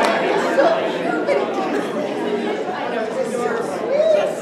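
Several voices talking at once, echoing in a large hall.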